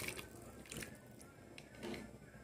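Broth pouring and dripping through a slotted spoon back into a pot of cooking pigeon peas: a short splash at the start, then a few faint drips.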